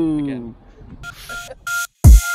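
A man laughing, his voice falling away in the first half second, then a few short electronic beeps on two steady notes, one higher, one lower, in the last second.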